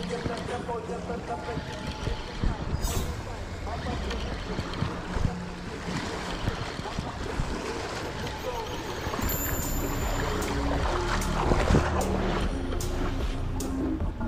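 A spinning reel being cranked steadily while fighting a hooked fish, with scattered clicks, under a steady rush of wind on the microphone.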